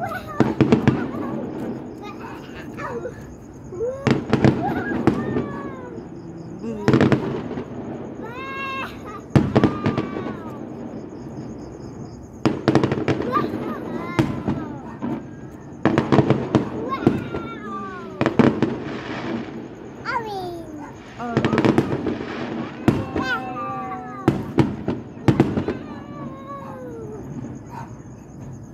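Aerial fireworks bursting in many sharp, irregular bangs, mixed with people's voices talking and exclaiming.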